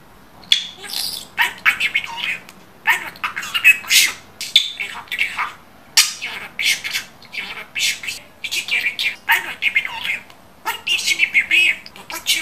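Pet budgerigar chattering: bursts of rapid, high warbling chatter and squawks, about one a second with short pauses between them.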